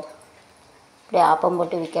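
A short pause with only low room noise, then a woman's voice speaking from about a second in.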